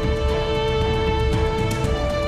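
Opening theme music of a TV drama, with one long held melody note, strings in the mix, over a steady low accompaniment.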